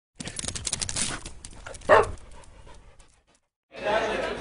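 A dog panting quickly, then one short, louder burst about two seconds in, fading out soon after.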